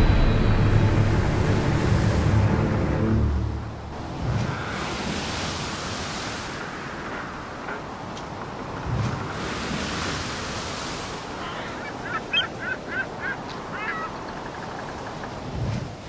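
Music fading out over the first few seconds, then surf and wind. Near the end comes a run of about six short, high calls.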